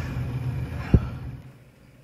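Steady low hum of a fume hood's induction-motor exhaust fan running, with one sharp thump about a second in. The hum fades out about a second and a half in.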